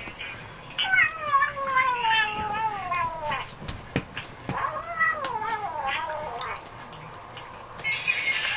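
Two long, wavering, cat-like wails, each falling in pitch. The first starts about a second in and the second about four and a half seconds in.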